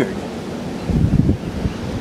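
Wind buffeting the microphone: an uneven low rumble, strongest about a second in.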